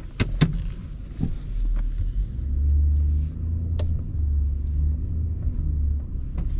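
Nissan Patrol's 5.6-litre V8 engine pulling under load, heard from inside the cabin as a low rumble that grows heavier about two seconds in. Several sharp knocks come through it, two close together near the start and one near the four-second mark.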